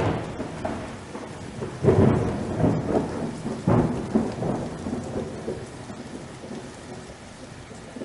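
Thunderclaps over steady rain: three loud claps, one at the start, one about two seconds in and one near four seconds, each rolling away slowly, with the storm fading gradually toward the end.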